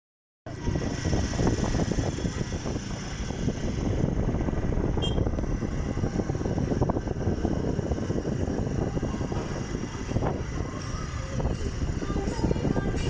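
Road vehicle noise: a low, uneven rumble with no clear engine note, heard while moving along a street.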